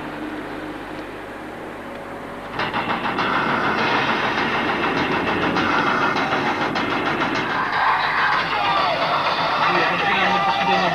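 Car running along a road, heard from inside the cabin: after a quieter stretch of background noise, a louder, steady rush of engine and road noise starts abruptly about two and a half seconds in.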